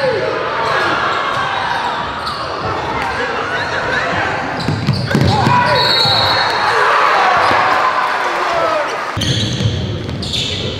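Live game sound in a gymnasium: many spectators' voices and shouts echoing in the hall, with a basketball bouncing on the hardwood court.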